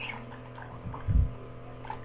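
Steady low electrical mains hum with a soft, low thump a little over a second in.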